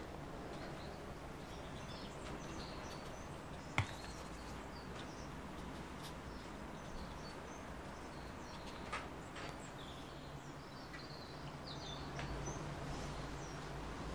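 Quiet room tone with faint, scattered bird chirps in the background and a single sharp click about four seconds in.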